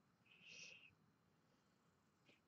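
Near silence: room tone, with one brief faint high hiss-like sound about half a second in.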